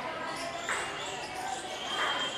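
Live sound inside a temple hall: indistinct voices over several steady ringing tones, with a beat struck about every 1.2 seconds.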